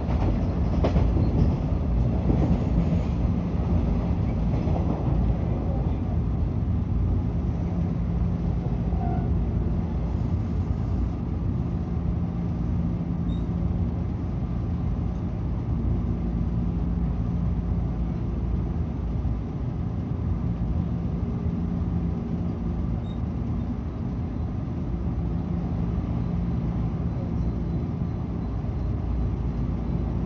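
Running noise inside a JR 113 series electric train carriage: a steady rumble of wheels on rail with a constant low hum. It gets slightly quieter in the second half as the train slows into a station.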